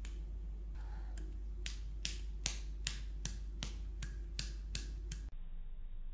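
A steady run of sharp clicks like finger snaps, about two and a half a second, starting about a second in and stopping shortly before the end, over a steady low hum.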